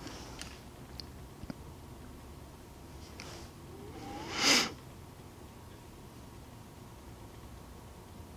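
Quiet room with a few faint light ticks in the first second and a half and a soft breath about three seconds in, then a single drawn-out spoken "all".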